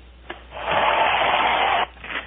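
A camera's motor drive firing a rapid burst of shutter clicks for just over a second, cutting off suddenly.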